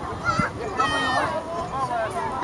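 A young child's high-pitched shout among the chatter of children and adults.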